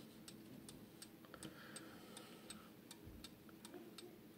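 Faint, steady ticking of a German-made Hampton crystal regulator mantel clock's mechanical movement as its round pendulum swings, about three ticks a second.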